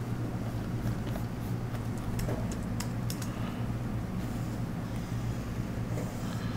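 Steady low electrical hum of room tone at a computer workstation, with a few faint, scattered clicks from working the keyboard and pen tablet while drawing.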